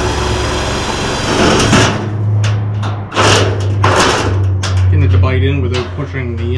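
A cordless drill driving screws into galvanized steel studs: a continuous run of the motor for the first two seconds, then several short bursts. A steady low hum runs underneath from about two seconds in.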